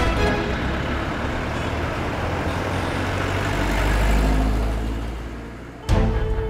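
A rushing noise with a deep rumble that swells to a peak about four seconds in, then fades away. Background music cuts in sharply just before the end.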